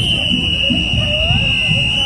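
A drum major's whistle blown in one long, steady, shrill blast of about two seconds, a signal to the marching band.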